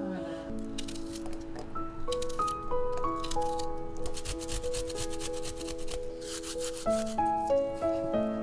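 Background music with clear melodic notes, over which a small handheld grater rasps against food in quick strokes, in two spells in the middle.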